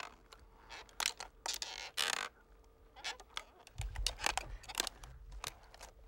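A piece of bamboo from an old chair worked by hand as a Foley creak: a run of short, irregular creaks and scrapes with a longer rasp about two seconds in. A low rumble joins about four seconds in and lasts a second or so.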